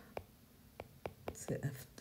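Stylus tapping and writing on an iPad's glass screen: a few faint, separate clicks as strokes are written.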